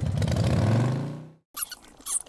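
Motorcycle engine running with a rapid low pulse, revving up in pitch and then fading out about a second and a half in. Brief faint high-pitched chirps and ticks follow.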